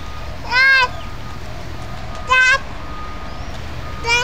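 Squeaker shoes on a toddler walking, giving two short, pitched squeaks about a second and a half apart, each dipping and then rising in pitch, one at each step of the squeaking foot. A steady low hum runs underneath.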